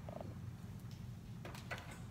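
Low steady room hum with a few faint short rustles and ticks from hands handling a lace wig's hair on a mannequin head.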